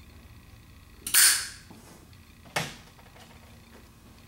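A cigarette being lit and drawn on: two short noisy bursts about a second and a half apart, the second sharper.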